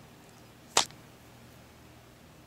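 A single short, sharp swish of noise a little under a second in, over a faint steady low hum.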